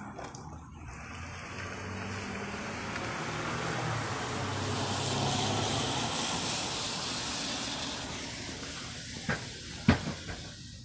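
A rushing noise, with a low hum under it, that swells to a peak about halfway through and then fades, as a passing vehicle does. Two sharp knocks come near the end.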